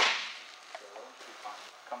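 A softball smacking into a catcher's mitt: one sharp pop at the very start that rings out over about half a second. Faint talk follows.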